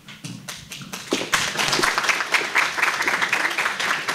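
Audience applause: a few scattered claps at first, then dense, steady clapping from about a second in.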